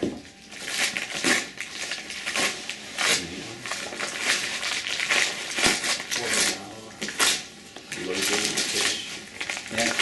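Chihuahua tearing and rustling wrapping paper: a string of irregular crackles and rips.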